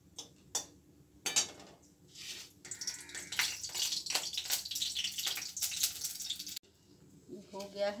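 Whole cloves and cardamom crackling and sizzling in hot oil in a kadhai for a tempering, with a couple of metal spatula knocks against the pan in the first second or so. The crackle cuts off suddenly shortly before the end.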